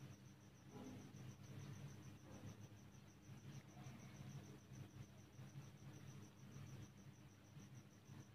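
Near silence: faint room tone with a cricket chirping in a steady rapid pulse, and faint strokes of a pen writing on paper.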